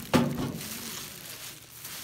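Plastic bag wrapping on a fryer basket rustling and crinkling as it is handled and a tape measure is pulled out, with a sharp click right at the start.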